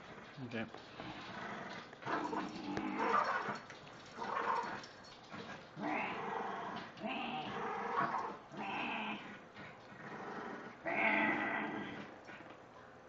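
Small dog growling in play while tugging at a toy in a game of tug-of-war, in repeated growls of about a second each.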